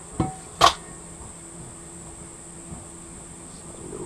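Two sharp metallic knocks about half a second apart near the start, the second louder, as the parts of an opened outboard power head are handled on the workbench. After them, only a steady high-pitched hum in the background.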